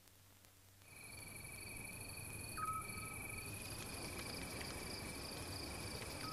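Faint, steady chirring of insects in the countryside, several high-pitched trills starting together about a second in, with one brief call in the middle.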